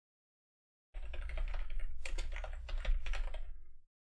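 Typing on a computer keyboard: a quick run of keystrokes starting about a second in and stopping shortly before the end, with a low hum underneath.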